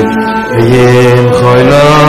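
A group of men singing a melody together in unison, holding long notes that step up and down in pitch.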